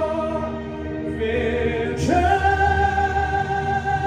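Singing over backing music: held notes in harmony fade, then about halfway a single voice slides up into a long held high note.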